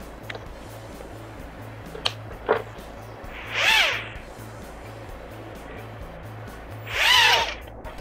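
Tiny quadcopter motors from a Hubsan H107C spin up and wind down in two short whines, each rising then falling in pitch over about a second, a few seconds apart, after a brief blip and a few clicks. One motor's positive and negative leads are reversed, so the drone does not fly right. Music plays underneath.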